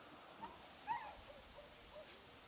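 A three-month-old puppy whimpering briefly, a short high whine about a second in.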